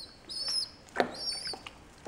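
A young fledgling bird giving two short, high cheeps, with a single sharp click about a second in while it is lowered into a tub of water.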